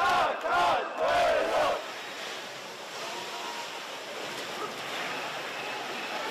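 A protest crowd chants in unison: three loud syllables, the last one drawn out, ending about two seconds in. A steady crowd din follows.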